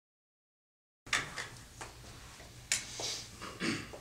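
Silence for about the first second, then a steady low hum with a few scattered clicks and knocks, the sound of musicians settling at their instruments before a take.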